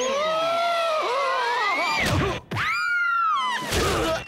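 Cartoon sound effects of people being thrown out and landing on pavement: a long rising whistling glide, then arching, falling glides, with a crash about two and a half seconds in and another just before the end.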